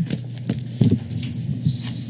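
A few light, irregular knocks and clicks picked up by a microphone, about four in two seconds, over a low steady hum.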